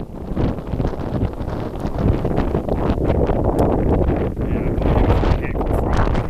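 Strong gusty wind buffeting the microphone: a heavy, unpitched roar that swells and eases from gust to gust.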